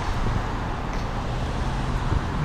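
Steady road traffic noise: cars driving past on the street alongside the sidewalk, an even low rumble of engines and tyres.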